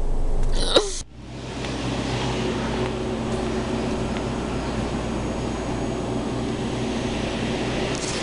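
A brief vocal noise over car-cabin rumble, cut off about a second in. It is followed by a steady hiss with a faint hum from the ventilation of a large empty school cafeteria.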